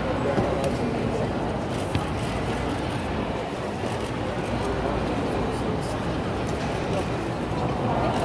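Indistinct background voices over a steady low rumble of room noise in a large sports hall.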